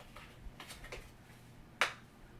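Small rolled-up paper note being unrolled by hand: faint, brief paper rustles, then one louder, sharp crinkle near the end.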